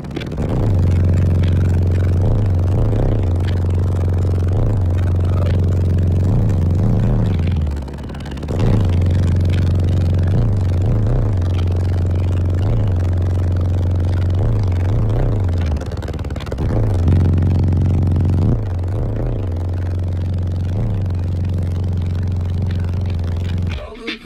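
Bass-heavy music played at high volume through four Skar ZVX 15-inch subwoofers in a sixth-order enclosure. A deep, sustained bass note is held for long stretches with short pulses, drops out briefly about eight seconds in, and cuts off sharply at the end.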